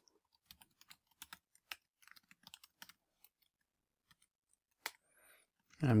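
Typing on a computer keyboard: a quick, irregular run of keystroke clicks for about three seconds, then a few scattered keystrokes.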